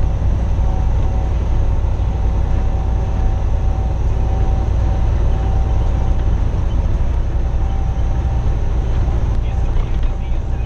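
Semi-truck diesel engine droning steadily inside the cab, with road and tyre noise, as the rig coasts down a long downgrade held back by its engine brake.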